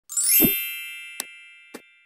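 Intro logo sound effect: a quick rising sweep into a bright chime that rings and slowly fades, with a low thump as it lands. Two short clicks follow about half a second apart.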